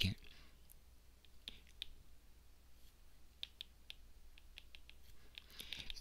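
Faint, scattered clicks of a stylus tip tapping on a tablet's glass screen during handwriting, over a steady low hum.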